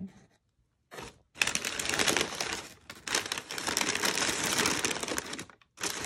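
Crumpled brown kraft packing paper being pulled back and crinkled in a cardboard box. After about a second of quiet comes a dense, crackling rustle that breaks off briefly near the end.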